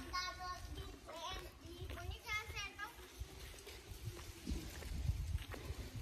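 Faint children's voices: two short calls, one right at the start and one about two seconds in, over a low rumble.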